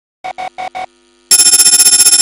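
Logo-intro sound effect: four quick electronic beeps, then, about a second and a quarter in, a loud, rapidly pulsing electronic buzz like a ringing phone.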